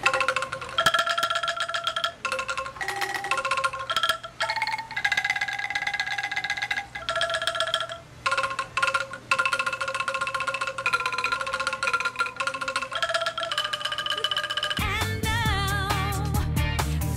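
A bamboo angklung played as a melody: each note is a shaken bamboo tube giving a held, rattling tone, with the notes changing one after another. About a second before the end it gives way to a pop music track with heavy bass.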